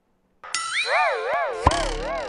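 Game-show electronic sound effect: a warbling tone whose pitch wobbles up and down about three times a second, with a sharp click partway through. It marks time running out on a quiz question.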